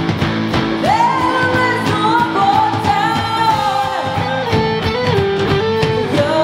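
Live hard rock band playing electric guitars, bass and drums, loud and dense. About a second in a singer's voice comes in, sliding up into long held notes over the band.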